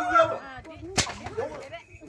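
A single sharp crack about a second in, among a person's voice.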